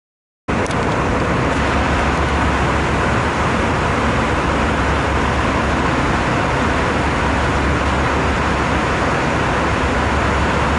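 Steady airliner cabin noise, the constant drone and hiss of the engines and airflow, heavy in the low end. It starts suddenly about half a second in.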